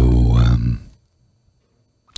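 A man's low, drawn-out voiced 'ahh' of appreciation, as after a sip of wine, ending just under a second in.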